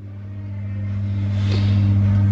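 A steady low hum that grows steadily louder, with a faint hiss of a bath bomb fizzing in the bath water above it.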